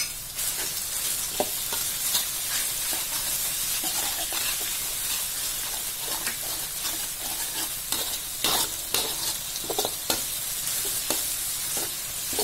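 Chopped chillies, shallots, garlic and tomato sizzling in hot oil in a metal wok, with a lump of palm sugar being stirred in to melt. A metal spatula scrapes and clicks against the wok now and then, a few strokes louder near the end.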